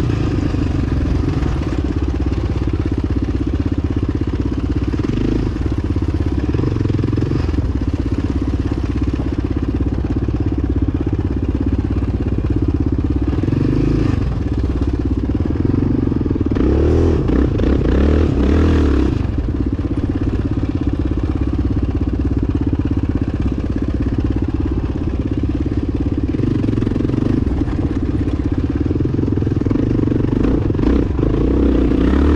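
Yamaha enduro motorcycle engine running continuously as the bike is ridden over a dirt trail. The revs swell in a louder burst of throttle about two-thirds of the way through, then settle back.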